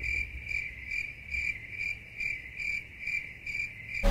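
Cricket chirping: a high, even trill pulsing about two to three times a second. The room sound stops dead around it, so it is a sound effect laid in, not a cricket in the room.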